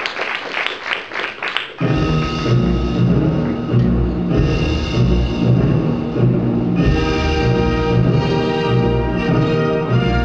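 Audience applauding. About two seconds in, orchestral music with strong timpani beats starts abruptly and carries on.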